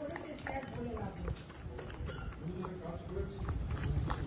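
A yellow Labrador eating soft mango chunks from a stainless steel bowl: wet chewing and licking, with irregular clicks and knocks of its muzzle against the steel bowl, under quiet voices.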